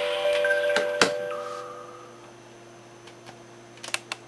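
A short electronic chime of a few pitched notes that rings out and fades away over about two seconds. There is a sharp click about a second in.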